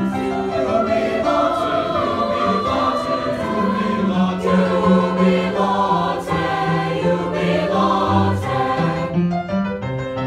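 A mixed-voice choir singing a sustained choral piece in parts, accompanied by an upright piano.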